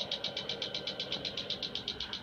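An electromechanical contact "clacker" in an electrolysis cell, its two contacts snapping apart and together in a steady rhythmic clatter of about eight clicks a second. Each click is one current pulse, driven by a reverse-sawtooth waveform at 8 Hz.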